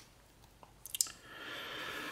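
Small clicks about a second in as the SOG Baton Q2's pivoting flathead and bottle opener tool is swung out of the handle and snaps into place, followed by faint handling noise.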